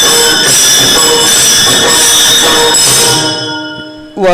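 Kirtan accompaniment led by many brass hand cymbals (taal) clashing and ringing in a steady beat, dying away about three seconds in.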